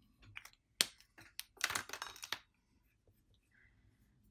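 Light clicks and taps of art supplies handled on a tabletop as a paintbrush is picked up to work ink off a plastic palette. There is one sharp click about a second in, then a short cluster of clicks and rustles near the middle.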